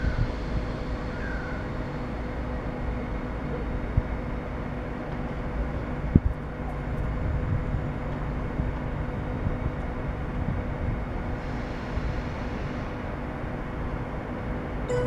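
Railway station ambience: a steady low rumble with a faint steady hum under it, and a single sharp click about six seconds in.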